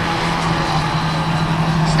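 Autograss racing car engines running as the cars lap the track, a steady drone with a constant low hum.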